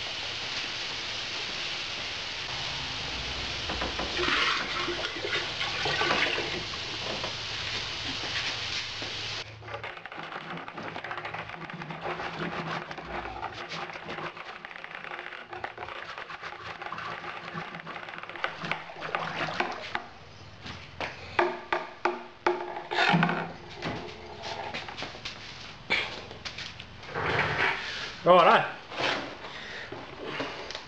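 Water pouring and splashing into a plastic fermenter of wort to top it up. A steady rushing noise runs for the first nine or ten seconds, then eases into quieter splashing and trickling.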